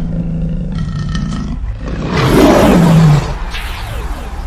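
Lion roar sound effect in a logo sting, over a steady low rumble; the roar swells loudest about two to three seconds in, with its pitch falling, then fades.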